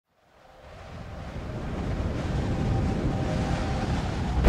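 A wind-like rushing noise swell in the soundtrack, fading in from silence and growing steadily louder, with faint steady tones underneath.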